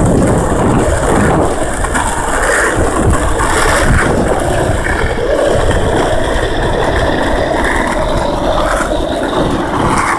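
Skateboard wheels rolling over asphalt: a steady rumble.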